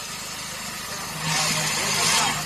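A motor engine idling steadily with a low rumble. About a second in, a hiss and a low steady hum come up and hold.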